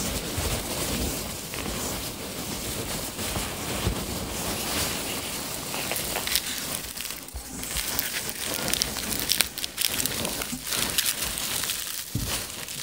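Hands rummaging through a cardboard box full of packing peanuts: a continuous rustle packed with small crackles. Near the end a bubble-wrapped part is pulled up through the peanuts.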